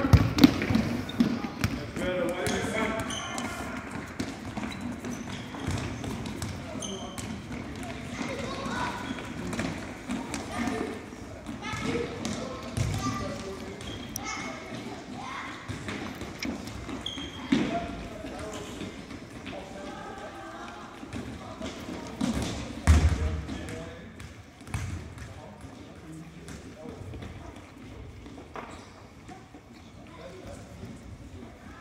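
Soccer ball kicked and bouncing on a wooden gym floor, a string of sharp knocks with one heavy thud a little after the middle, under children's voices calling out across the hall.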